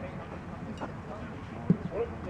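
A baseball pitch smacking into the catcher's leather mitt once, sharply, near the end, with spectators talking in the background.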